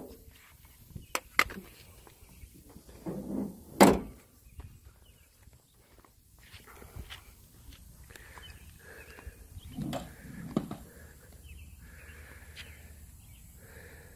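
A few sharp knocks and one loud thump about four seconds in, then softer knocks around ten seconds, over a faint, steady outdoor background.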